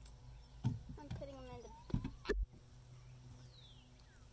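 Potatoes knocking into a slatted wooden crate, three hard knocks in all. A bird calls once in between, and a short falling chirp comes near the end.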